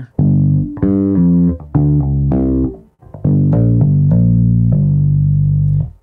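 Bass guitar playing two short runs of pull-offs, with a brief pause between them about halfway through: a note is plucked, then lower notes on the same string sound as the fretting fingers lift off, with a softer attack than a plucked note.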